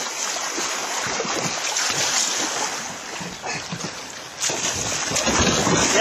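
Fast river water flowing with wind buffeting the microphone, a steady noisy rush. It gets louder, with more low rumble, about four and a half seconds in.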